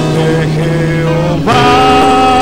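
A man sings a worship song into a microphone over instrumental backing. About one and a half seconds in he slides up into a new note and holds it.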